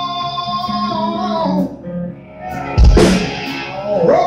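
Live hard rock band with electric guitars and bass playing loudly. A guitar holds a long note through the first part, the sound drops briefly around two seconds in, and then the whole band comes in on a loud hit near the three-second mark.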